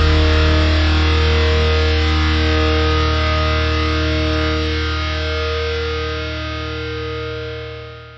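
A distorted electric guitar chord from a metalcore song left ringing with effects, sustaining with no new notes and slowly decaying, then fading out near the end: the song's closing chord.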